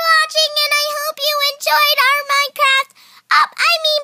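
A girl singing a wordless made-up tune in short, high-pitched nonsense syllables, with a brief break near the end.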